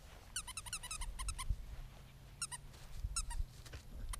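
Dog whining in short, high-pitched squeals: a quick run of about eight about half a second in, then two more pairs later, as it waits excitedly for a treat.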